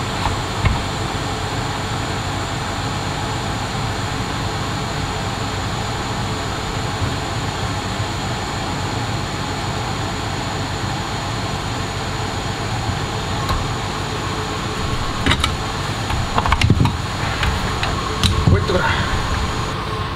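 Steady rushing airflow of a solder fume-extractor fan running throughout. In the last third there are a few light clicks and taps of tools and handling against the board.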